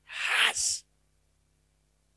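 A man's short breathy burst into a handheld microphone: two quick hissing pulses lasting under a second, a vocal noise rather than words.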